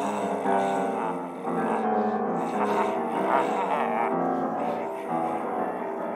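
Grand piano played solo, a dense free improvisation with many notes sounding together and changing constantly.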